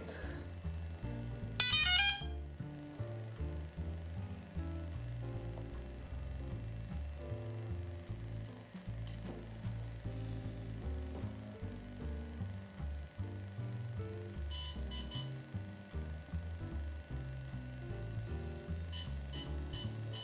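DJI Phantom 3 quadcopter beeping as its firmware update starts: a loud, rapid trill of high tones about two seconds in, three short beeps near the middle-to-late part and a run of short repeated beeps near the end, signalling the update in progress. Background music with a steady beat plays throughout.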